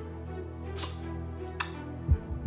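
Quiet background music of steady, held low notes, with two short sharp clicks about a second and less apart.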